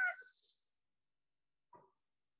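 The last of a spoken word trailing off with a short breathy hiss in the first half-second, then near silence.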